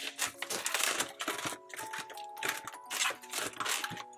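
Rustling and crinkling of a ring binder being opened and its clear plastic zipper envelopes and paper bills handled, with soft background music of held notes coming in about a second and a half in.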